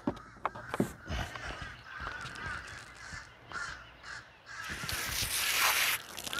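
Crows cawing in the distance, with small knocks and clicks close by. Near the end a loud steady hiss lasts about a second and a half.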